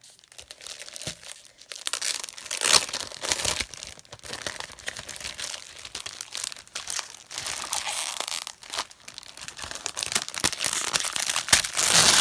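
Clear plastic wrapping on scrapbook paper pads crinkling as the packs are handled, in irregular rustles and crackles, loudest about three seconds in and near the end.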